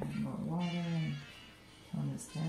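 A person's voice holding long, steady sung notes: one from about half a second in to just past a second, another starting near the end.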